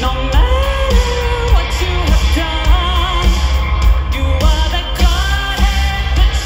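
Live rock band with a woman singing lead over drums, bass and electric guitar, driven by a steady heavy beat.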